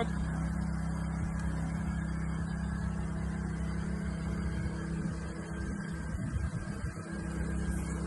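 A steady low motor hum, like an engine running, continuing unchanged throughout.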